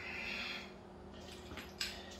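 Faint hand-work noises at a motorcycle's rear wheel: a soft rustle, then a single light click near the end, over a steady low hum.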